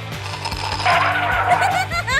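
Background music with a steady beat. About a second in comes a brief gurgling slurp of liquid being sucked up through a drinking straw.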